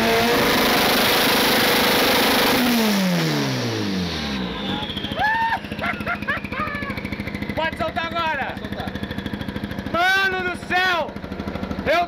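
Turbocharged 1500-horsepower drag-racing Chevette engine held at high revs, then the revs fall away about three seconds in and it settles to idle, while the turbo's whine winds slowly down in pitch as it keeps spinning. Excited whoops and laughter over the idle.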